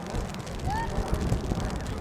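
Wind buffeting the microphone, an uneven rumble with irregular thumps, with a couple of brief, faint distant calls about a second in.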